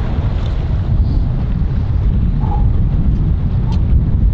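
Wind buffeting the microphone outdoors, a loud steady low rumble.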